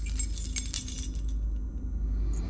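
Keys jingling and clicking in a door lock as a key is turned to unlock it, a run of light metallic clicks and jingles that thins out toward the end, over a low steady hum.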